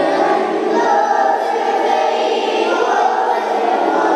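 Several voices singing together in chorus, holding a long, steady passage of an Urdu devotional salaam.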